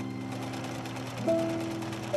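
Sewing machine running with a rapid, steady mechanical rhythm, under soft music of held notes; a new note comes in just over a second in.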